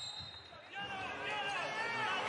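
Basketball arena sound during a live game: crowd noise that swells about two-thirds of a second in, with high, wavering squeaks and calls from the court.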